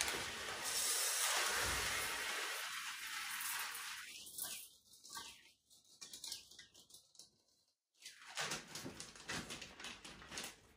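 Plastic food packaging rustling and crinkling as it is handled, with red contents poured from a clear bag into a steel pot; a dense hiss for the first few seconds, thinning to light crinkles and clicks, with a brief drop-out about eight seconds in.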